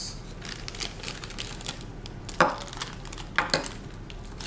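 Plastic zip-lock bags and paper packets crinkling and clicking as they are handled. In the second half there are two louder knocks of plastic against the glass tabletop, each with a short ring.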